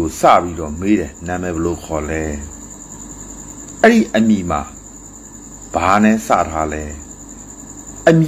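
A man talking in short spoken phrases with pauses, over a continuous high-pitched trill of crickets.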